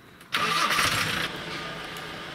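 A van's engine starting: a sudden loud burst of noise about a third of a second in, lasting about a second, then settling into a steady low idle.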